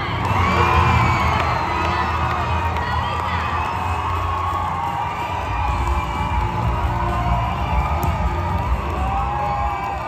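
Audience cheering and screaming, with many high-pitched shrieks and whoops, loudest about a second in and staying loud. Stage music with a steady bass runs underneath.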